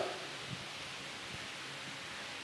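Faint, steady background hiss, with no distinct sound in it.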